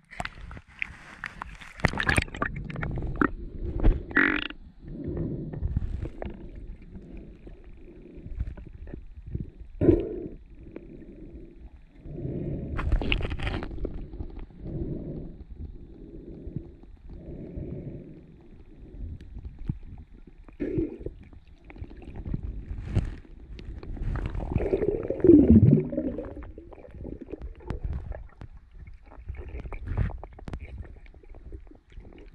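Muffled underwater sound of a freediver swimming, picked up by a hand-held camera under the surface. Low whooshes of moving water come about once a second, with a few sharper knocks and a falling tone near the end.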